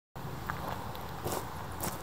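A few soft footsteps, about three in two seconds, as a person walks up to the camera, over a steady low outdoor rumble.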